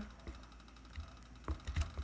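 Wooden craft stick stirring glitter glue in a plastic bowl, with a few faint taps and clicks of the stick against the bowl, the clearest about a second and a half in.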